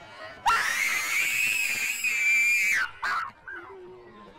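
A child screaming: one long, high-pitched scream held for about two seconds, then a brief second shout.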